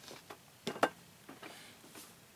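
A few light clicks and taps of handling, with two sharper clicks close together just under a second in.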